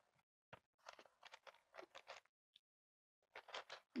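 Faint chewing of fried food: soft, irregular mouth clicks and small crunches, with a pause of about a second in the middle.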